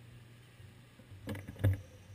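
Low, steady hum of a car engine idling close by. About a second and a half in come two short knocks, the second louder, followed by a faint thin high tone.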